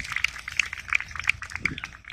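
Scattered, irregular audience clapping outdoors.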